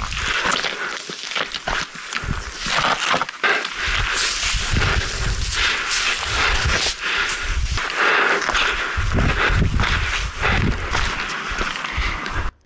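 Wind buffeting a chest-mounted action camera's microphone in uneven gusts, with footsteps on grass and rock during a descent of a steep slope.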